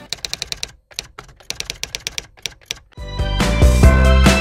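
Computer keyboard typing sound effect: rapid keystroke clicks with a brief pause about a second in. Loud music with a strong beat comes in about three seconds in.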